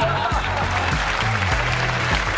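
Studio audience applauding over background music with a low, steady bass line.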